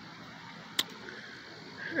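Quiet outdoor background with no vehicle plainly heard, broken by a single sharp click a little under a second in.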